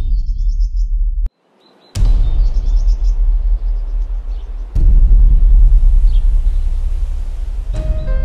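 Opening of a film soundtrack: a deep, loud rumbling drone with bird chirps over it. It cuts out for a moment about a second in, returns, and swells louder midway, and then steady musical notes come in near the end.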